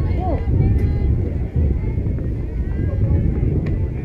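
Wind rumbling on the microphone of an outdoor camera, with distant calls and shouts from players and spectators. There is a sharp click about a second in and another near the end.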